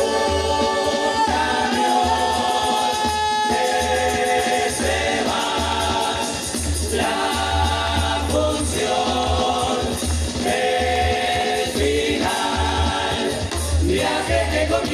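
Uruguayan murga chorus of massed voices singing in multi-part harmony, held phrases broken by short pauses every second or two, over a low drum.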